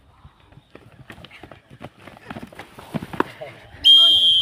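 Kabaddi players' feet pounding and scuffling on a dirt court in quick, growing knocks as a raid turns into a tackle, then a sharp blast of a referee's whistle near the end.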